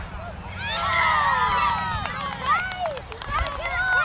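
Sideline spectators shouting and cheering at once, many high-pitched voices overlapping, louder from about a second in.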